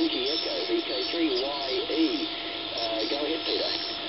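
A ham radio station's voice received on the OzQRP MDT 7 MHz double-sideband direct-conversion transceiver and heard through its speaker: thin speech with no low end over a steady bed of band hiss, with a faint steady tone underneath.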